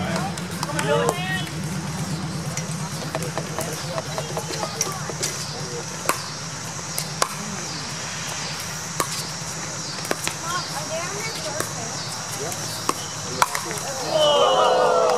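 Pickleball rally: paddles striking a hard plastic pickleball in a long run of sharp pops at uneven intervals, some close together and some a second or more apart. A steady low hum runs underneath.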